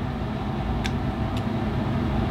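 Steady low mechanical hum of room air conditioning, with two faint short clicks a little under and a little over a second in.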